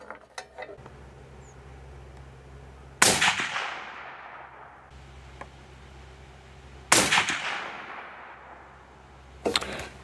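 Two shots from a Mossberg Patriot .308 Winchester bolt-action rifle, about three seconds in and again about four seconds later, each sudden and loud and followed by a long fading echo.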